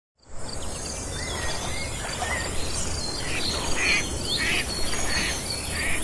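Outdoor nature ambience: birds calling in short chirps over a steady, pulsing insect trill.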